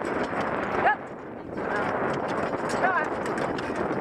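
A pony's hoofbeats on grass as it pulls a driving carriage at speed, over a steady rushing noise from the moving carriage.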